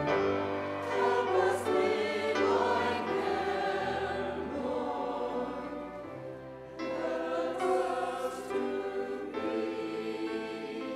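Church choir singing with piano and violin accompaniment, in phrases with a short break about six seconds in.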